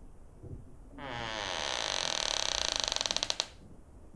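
Interior door creaking slowly open on its hinges: one long drawn-out creak starting about a second in, breaking into a quickening stutter before it stops.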